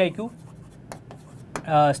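Faint scratching and light taps of a pen writing by hand on an interactive smartboard screen, between words of a man's speech.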